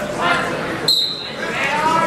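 Referee's whistle blown once, a short shrill blast about a second in, starting the wrestling bout; voices of the crowd in the gym around it.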